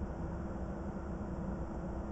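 Steady low hum and hiss inside a parked DAF truck cab, with a faint steady tone over a low rumble.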